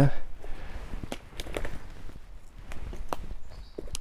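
Footsteps of boots scuffing and crunching on wet leaf litter and twigs as a man clambers up a steep, rubble-strewn woodland bank: a string of irregular short crackles and clicks.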